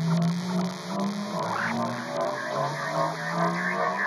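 Beatless intro of an electronic trance track: a low synthesizer drone that shifts between a few pitches under a steady, hissing noise wash, with faint scattered synth tones.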